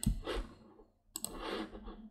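Two computer mouse clicks about a second apart, each followed by a brief soft hiss.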